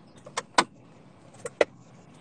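Four short clicks or knocks in two close pairs, about a second apart, over a faint steady background hum.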